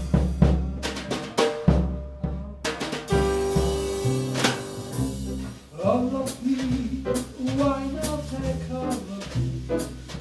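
Jazz piano trio playing mid-tempo swing: drum kit played with sticks, with sharp snare and rim strokes and bass drum, under an upright piano and a walking bass. The piano holds a long chord in the middle, then moves into a running melodic line.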